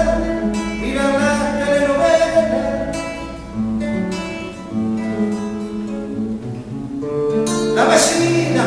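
Solo classical guitar playing an instrumental passage of single notes and chords, ending in a loud strummed chord near the end.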